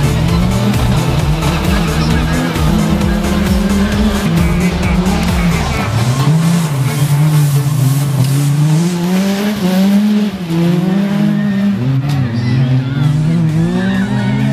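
Ford Fiesta R2 rally car engine revving hard, its pitch repeatedly climbing and dropping back with the gear changes, over background music whose low, pulsing beat drops out about six seconds in.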